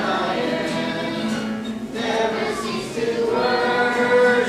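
Youth choir of boys and girls singing a worship song together in sustained phrases, with a brief break between phrases about halfway through.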